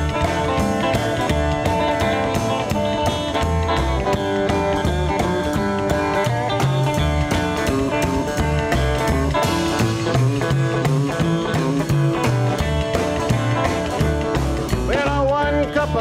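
Instrumental break in a rockabilly song: an electric guitar and a strummed acoustic guitar play over stepping upright bass notes and a steady beat. Singing comes back right at the end.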